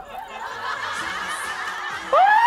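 A group of people laughing.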